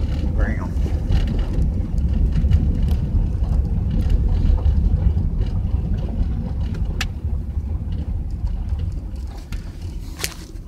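A vehicle driving across a salt flat, heard from inside the cabin: a steady low rumble of tyres and engine that eases off near the end. There is a single sharp click about seven seconds in.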